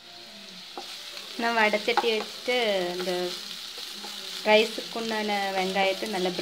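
Sliced onions sizzling as they fry in oil in a ceramic-coated pan, stirred with a wooden spatula. Two runs of loud pitched sounds, each sliding down in pitch, sound over the sizzle, the first about a second and a half in and the second near the end.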